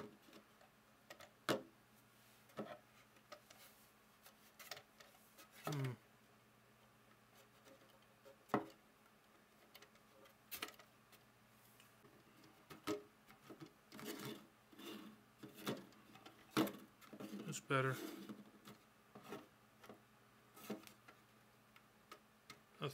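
Scattered light knocks and clicks with soft rubbing: a small 3D-printed garbage can on TPU rubber tyres being pressed down and rolled about on a wooden tabletop to test its freshly stiffened spring suspension.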